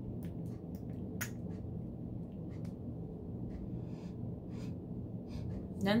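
A few light clicks of a plastic cosmetic pump bottle being pressed to dispense cream, the sharpest about a second in, then soft sniffing near the end as the cream is smelled. A low steady hum runs underneath.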